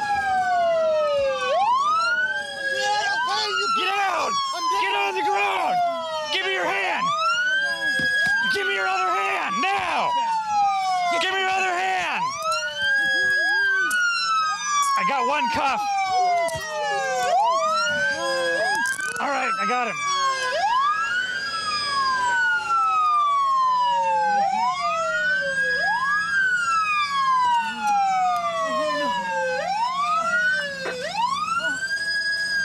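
Sheriff's patrol car sirens wailing. Each sweep rises quickly, then falls slowly over about four seconds, and a second siren overlaps at times.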